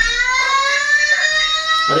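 A sound clip plays a sustained tone of several pitches that glides slowly upward and cuts off near the end. It went off without its button being pressed.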